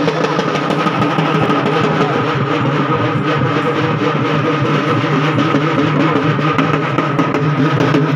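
Loud festival procession drumming: rapid, dense drum beats over a steady droning tone that runs unbroken throughout.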